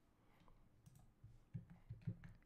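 Near silence with faint clicking from a computer keyboard, a few soft clicks in the second half.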